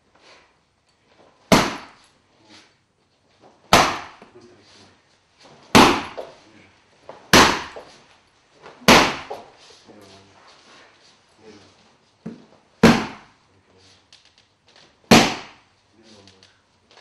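Hard strikes landing on a padded kick shield: seven sharp slaps, roughly one every two seconds, with a longer pause midway.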